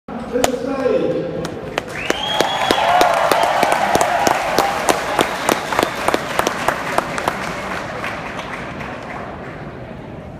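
Crowd applauding and cheering in a large hall, with sharp separate claps close by and a voice and a rising whoop in the first few seconds. The clapping thins out and fades toward the end.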